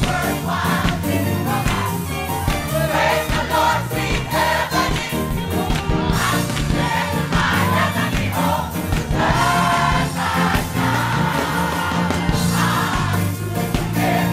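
Gospel choir singing together in full voice, with a steady beat under the voices.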